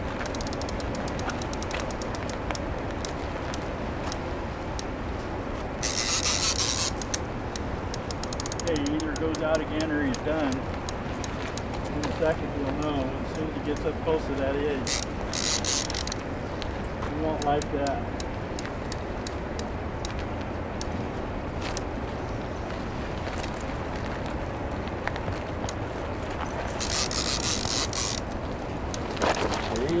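Steady rush of river water from the dam outflow. Over it come three short whirring bursts of a fishing reel's drag giving line as a hooked sturgeon runs, about 6, 15 and 27 seconds in. Faint distant voices are heard now and then.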